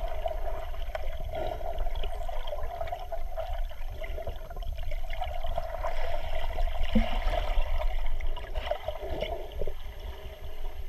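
Underwater ambience picked up by a submerged GoPro in its housing: a steady, muffled rush of water with a low rumble and scattered faint clicks and crackles.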